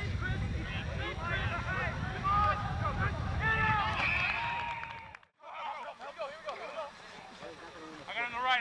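Men shouting on a rugby pitch during play, several overlapping calls and no clear words, over a low rumble of wind on the camcorder microphone. About five seconds in the sound cuts out briefly at a break in the recording, then fainter shouts carry on.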